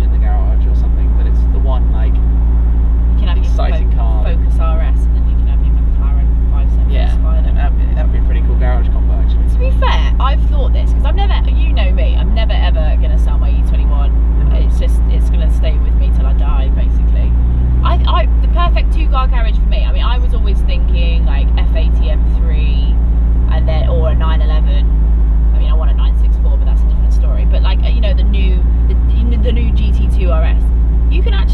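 A man and a woman talking over the steady low rumble of a McLaren 570S Spider on the move with its roof down.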